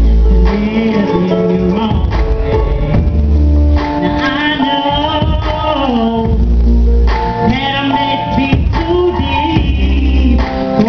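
Loud live music: a vocalist singing into a microphone over a backing track, the melody sliding between notes, with a deep bass note every three seconds or so.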